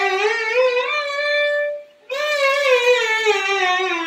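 Violin playing a slow, smooth slide up one string with one finger, rising about an octave and holding the top note, then after a short break a slide back down: an ornament exercise of Hindustani violin playing.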